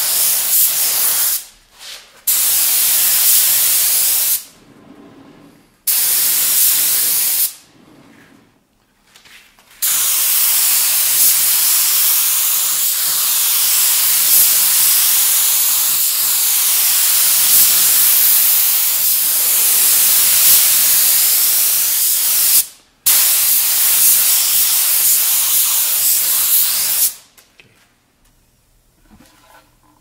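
Gravity-feed compressed-air spray gun spraying lacquer: a loud hiss in short bursts of about two seconds each as the trigger is pulled and let go. Then come one long pass of about thirteen seconds and another of about four, which stops a few seconds before the end.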